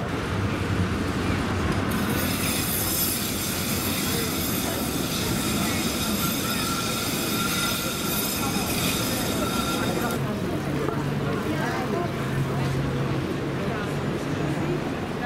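City tram running on its rails, steel wheels giving a high, steady squeal and rolling hiss for about eight seconds that cuts off near the end, over the murmur of passers-by.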